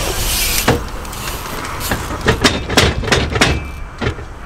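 Bike tyres rolling on skatepark concrete, then a quick run of sharp knocks and clatters from the bike and its tyres hitting the concrete, from about two seconds in.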